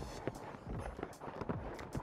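Faint, irregular soft thuds of a horse's hooves on a rubber-crumb arena surface as it comes down from trot to walk.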